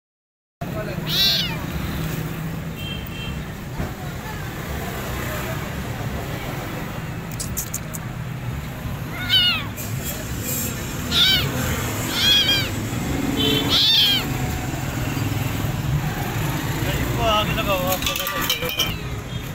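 A hungry stray kitten meowing about five times: once near the start, then four meows in close succession about halfway through. Under the meows runs a steady low hum.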